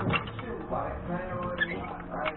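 Indistinct talking, with one sharp knock just after the start.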